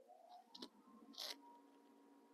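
Near silence: faint room tone, with a soft click a little after half a second and a brief hiss a little after a second.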